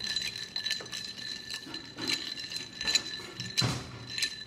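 Ice cubes clinking and rattling against the sides of a drinking glass as a straw stirs them, a run of small irregular clinks.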